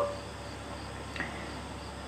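Crickets chirring faintly and steadily in the background, over a low steady hum.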